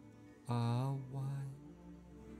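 Meditation background music: a low, chant-like sustained note begins about half a second in, steps once in pitch and fades out over a quiet steady backing.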